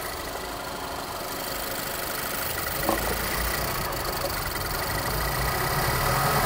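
Car engine idling while its electronic throttle's PWM control line is fed a steady 12 volts, forcing the throttle open, so the idle is unstable. The running gradually grows louder.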